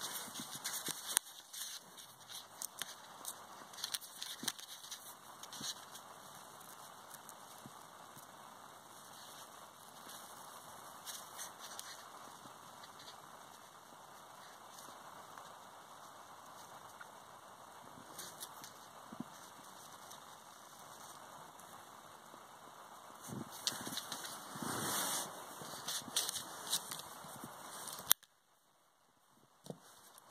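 Faint handling sounds of multimeter test leads: small clicks and taps as the probe touches the spark plug, with rustling over a steady background hiss. A busier patch of knocks and rustles comes near the end, then the sound cuts off abruptly.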